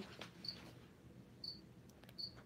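A cricket chirping faintly: two short, high chirps about a second apart over quiet room tone.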